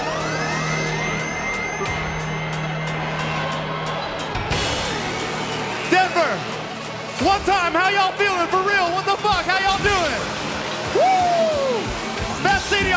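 Live electronic dance music in a breakdown: rising synth sweeps climb and level off over a low held bass note. About six seconds in, rhythmic pitch-bending vocal-like stabs come in, and one long falling swoop sounds near the end.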